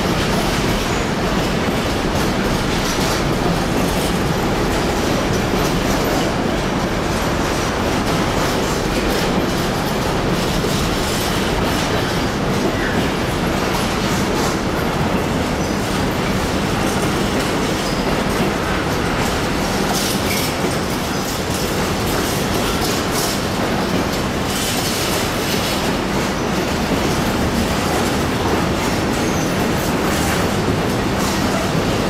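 Fully loaded container flat wagons of a freight train rolling past at close range: a steady rumble of wheels on rail, with scattered clicks over the rail joints.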